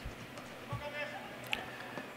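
Faint ambient sound of a football match in a nearly empty stadium: distant players' voices and one short, sharp knock about one and a half seconds in.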